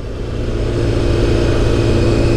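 Sportbike engine running at a steady pitch while riding, swelling slightly in loudness over the first half second and then holding level.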